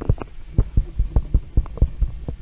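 A quick run of about a dozen dull, low thumps, roughly five a second: handling knocks as a 3D-printed foam-dart blaster is moved about in the hands.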